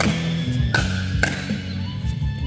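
Sharp pops of a plastic pickleball struck by paddles and bouncing on the court, three in quick succession in the first second and a bit, over background music with a steady low bass line.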